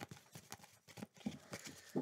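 A tarot deck being shuffled by hand: a quick, irregular run of faint card clicks and flicks.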